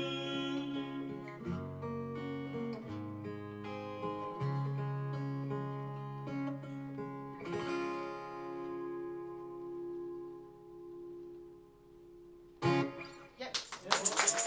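Acoustic guitar closing out a slow ballad: the singer's last held note fades in the first second, then picked notes and chords lead to a final strum at about seven and a half seconds that rings out and slowly dies away. Clapping breaks out near the end.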